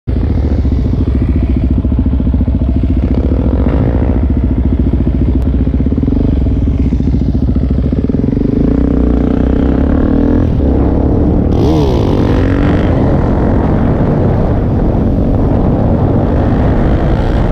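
Suzuki DRZ400 single-cylinder four-stroke supermoto engine running at road speed, heard from the rider's seat. A second motorcycle runs alongside, and about twelve seconds in the engine pitch briefly rises and falls.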